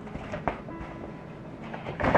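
Light handling sounds of a kraft-paper gift envelope and its box, with a short tap about half a second in, over soft background music.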